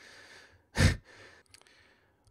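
A man breathing close to the microphone between sentences: a faint inhale, then a short, louder exhale like a sigh just under a second in.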